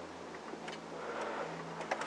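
A few faint, sharp computer mouse clicks over a steady low hum and hiss.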